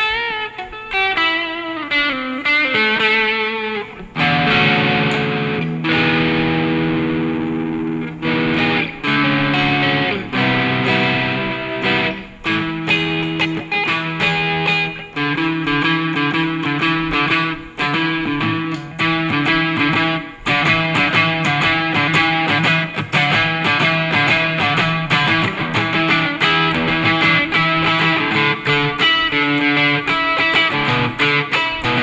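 Les Paul-style electric guitar with Wilkinson Alnico V humbuckers, played through Tube Screamer overdrive with added gain and reverb. It opens with a descending run of single notes, moves to held notes and chords about four seconds in, and turns to fast-picked lead lines in the second half.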